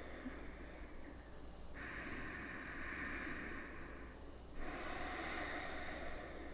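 A woman's slow, deep breathing, quiet and even: one long breath lasting about two seconds begins near the two-second mark, and another begins about half a second after it ends.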